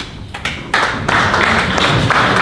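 A few scattered claps, then audience applause breaks out under a second in and carries on steadily.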